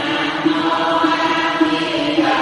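Buddhist devotional chanting: voices intoning a mantra in a steady, even rhythm over a musical backing.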